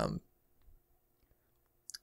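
Near silence after a short spoken 'um', broken by two faint clicks, one under a second in and one just before the end.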